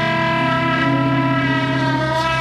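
A trumpet holds one long note over the band's backing. The lower accompanying notes shift about a second in.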